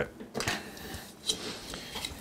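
Handling noise of a person reaching across a desk and picking up a 3D-printed plastic part: faint rustling with a few light clicks, the sharpest a little past halfway.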